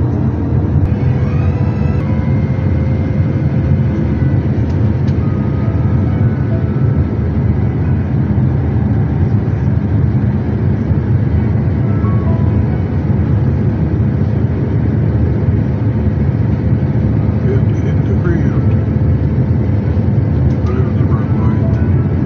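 Airliner cabin noise on final approach: the jet engines and the rush of air over the fuselage make a steady low rumble, with a few thin steady tones above it.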